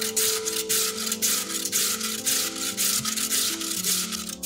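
Raw peeled potato grated on a stainless-steel box grater, scraping strokes in a quick even rhythm of about three a second, over background music.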